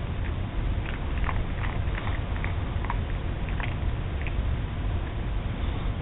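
Miniature schnauzer crunching and chewing a dog biscuit: small irregular crunches, with a steady low hum under them.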